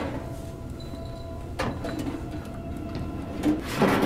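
War film soundtrack: a low sustained drone with faint steady tones, broken by a sharp knock about a second and a half in.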